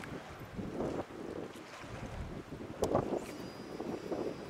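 Wind buffeting the microphone beside open water, an uneven low rumble, with a single sharp click about three seconds in.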